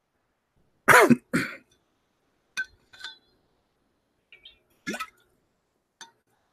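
A man coughs twice about a second in, the first cough loud with a sharply falling pitch. A few faint clicks follow, then another short cough near the end.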